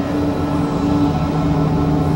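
Experimental electronic synthesizer drone music: two low tones held steadily over a dense, noisy industrial texture, the lower tone swelling in the second half.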